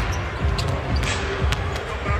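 A basketball being dribbled on a hardwood court: repeated low bounces over steady arena background sound.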